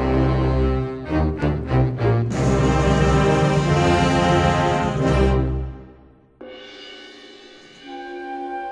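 Spanish wind band playing the opening of a processional march. Deep low chords and short accented notes swell into a loud full-band chord, which fades away about six seconds in; then a soft, sustained, quieter passage begins.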